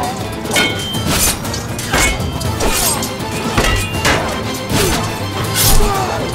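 Sword-fight sound effects over a dramatic music score: a sharp metal clash or hit about once a second, several of them ringing briefly, with short shouts and grunts among them.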